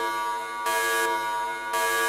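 Electronic alarm buzzer: a steady, pitched tone with many overtones that swells and dips about once a second.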